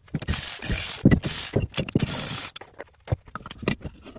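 Ratchet undoing the bolts on a steering rack housing, about two seconds of continuous ratcheting, followed by a few separate metallic clicks and knocks as the parts are handled.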